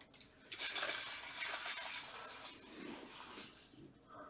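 Faint rustling and scraping of trading cards sliding against one another in nitrile-gloved hands as they are handled and shuffled.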